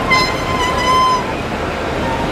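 Street traffic noise on a city boulevard, with a loud high-pitched squeal lasting about a second near the start.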